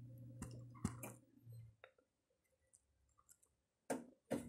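Faint, sharp clicks of computer keyboard keys being tapped while trying to enter the BIOS setup during boot: a few clicks in the first second and a louder one near the end. A low steady hum under them stops about two seconds in.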